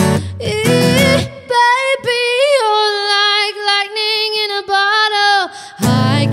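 Live acoustic performance: a woman singing with acoustic guitar accompaniment. About a second and a half in, the guitar drops out and she holds one long note with vibrato alone, then the guitar strumming comes back in near the end.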